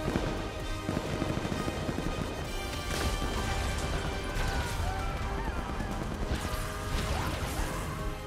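Film soundtrack: a music score over a deep, continuous rumble, with crackling and crashing effects that thicken about three seconds in and again near the end.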